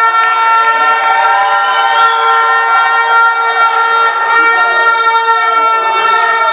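A loud, steady horn-like tone held at one pitch, with many overtones.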